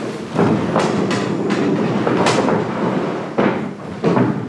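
Metal-framed stacking chairs dragged and knocked about on a wooden stage floor, with footsteps: a continuous scraping rumble broken by several knocks, easing off a little before the end.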